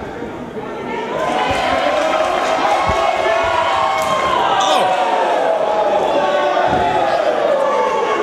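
Wrestling crowd shouting in an arena, many voices at once. Two heavy thuds of wrestlers hitting the ring canvas come about three seconds in and again about a second before the end.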